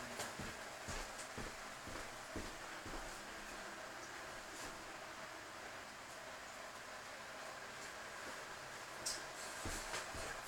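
Quiet room tone with a faint steady hiss and a few soft, brief knocks and clicks, a couple near the start and a couple near the end.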